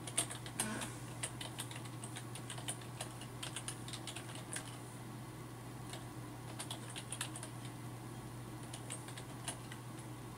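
Typing on a computer keyboard: quick runs of key clicks through the first half, then a pause and a few shorter bursts of keystrokes.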